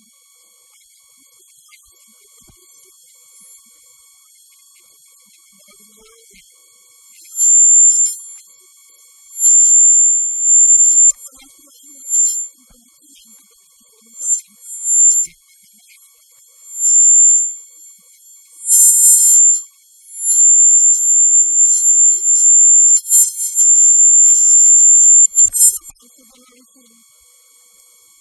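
A piercing, high-pitched electronic whine on the audio track, with no voice audible. It starts about seven seconds in as repeated loud bursts of a second or so each. From about two-thirds of the way through it is nearly continuous until just before the end.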